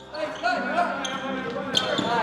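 Basketball practice in a gym: a ball bouncing on the hardwood floor, with players' voices calling out on the court.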